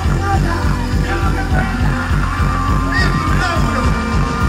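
Live dancehall music from a band, played loud through an outdoor stage sound system, with a heavy, steady bass line and a voice over it.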